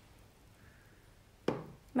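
Near-silent room tone, then a single sharp knock about one and a half seconds in, an object set down on a wooden surface.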